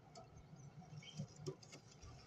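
Faint scratching and rustling in wood-shaving bedding, with scattered small clicks, as an adult cockatiel shifts and turns in its nest box.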